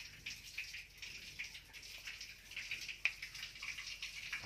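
Faint trickling and dripping of water inside a wooden boat's hull, with one sharp click about three seconds in.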